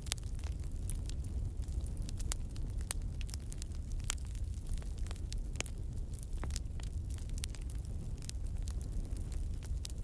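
A fire crackling: irregular sharp snaps over a steady low rumble.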